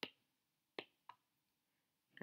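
Three short, light clicks with near silence between them: one at the start and two close together about a second in. They are clicks from selecting a pen colour on a computer.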